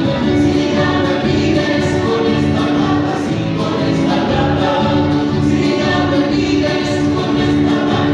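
Chilote folk song: a group of voices singing together over instruments, loud and steady.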